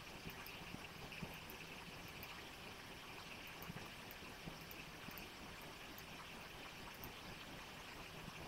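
Quiet room tone: a low, steady hiss with a few faint small clicks.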